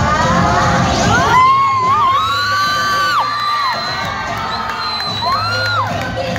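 Children shouting and cheering over a Hindi film song, with a long drawn-out call from about a second and a half in and a shorter one near the end.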